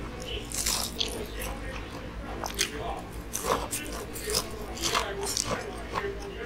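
Close-miked chewing and biting of crispy karaage (Japanese fried chicken), a string of short, irregular crunches and wet mouth clicks.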